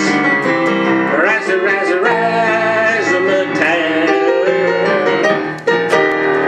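Digital piano playing an upbeat jazz tune, with a brief break and a new chord struck near the end.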